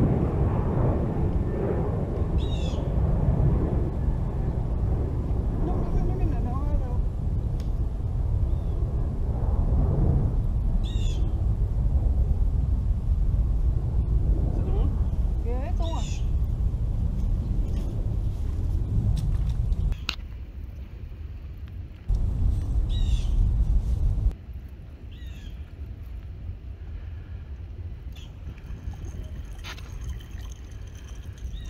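Wind rumbling on the microphone, heavy for about the first twenty seconds and much lighter after that, with a bird giving short high calls about half a dozen times.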